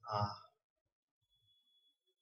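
A man's short hesitant "uh" lasting about half a second at the start; the rest is near silence.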